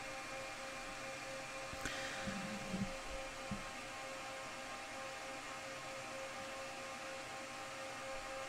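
Steady hum and fan noise with a fixed tone running through it, and a faint click about two seconds in.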